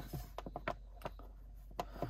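Hands handling a braided nylon rope and its knot on a tabletop: faint rubbing with several short, irregular clicks as the rope is shifted and set down.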